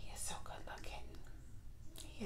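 A woman's voice, soft and breathy, barely above a whisper.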